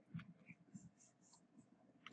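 Faint ticks and scratches of a stylus writing on a tablet, a few short strokes in the first second, otherwise near silence.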